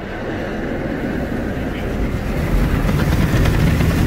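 Ryko Rocket car wash tunnel machinery heard from inside the car: a steady rumble and hiss of spraying water and wash equipment that grows gradually louder.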